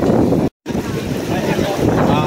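Wind buffeting the microphone over the mixed chatter of a crowd of swimmers at a pool, broken by a brief dropout about half a second in.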